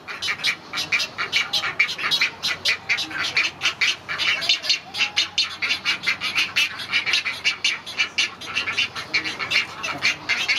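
Great egret chicks begging at the nest: a fast, unbroken chatter of short clicking calls, several a second.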